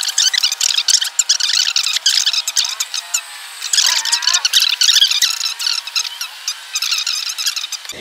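A boy's voice ranting, sped up in editing so that it runs very fast and high-pitched, like a chipmunk.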